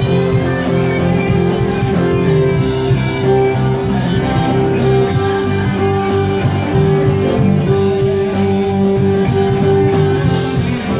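A live rock band playing an instrumental passage, with electric guitar to the fore over bass and a steady drumbeat and no vocals.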